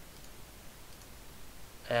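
A couple of faint computer mouse clicks over steady low microphone hiss, and a man's voice beginning near the end.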